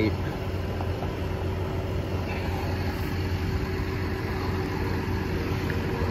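Crop sprayer's engine idling steadily: a low, even hum with a constant tone above it.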